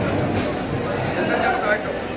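Voices of people talking and calling out over each other in a busy fish market, one voice rising and falling in pitch.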